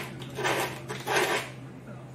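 A round brass wire brush set in a wooden dowel scrubs the foam nose shelf of a deer headform in two short scratchy strokes, about half a second apart. It is scuffing the foam surface so that epoxy will grip.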